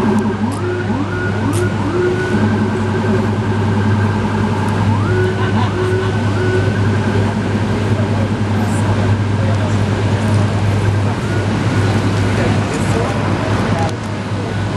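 A siren on a city street, rising in pitch in several quick sweeps over the first couple of seconds and again about five seconds in, then holding a steady tone, over traffic and a steady low hum.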